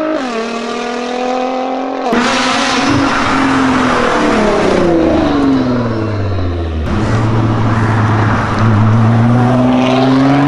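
Nissan GT-R R35's 3.8-litre twin-turbo V6 running through an Fi Exhaust race-version decat full system, loud throughout. The engine note rises under acceleration, falls steadily as the car eases off, then climbs again as it pulls away, with abrupt jumps in the note at about two and seven seconds in.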